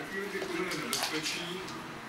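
A person's voice talking, with one sharp click about a second in.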